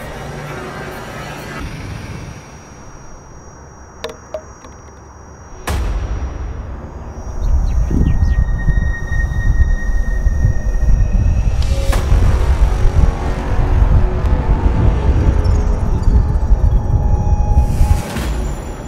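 Background music with a heavy bass. It is quieter for the first few seconds, with a sudden hit about six seconds in, and grows louder from about eight seconds on, with another hit near twelve seconds.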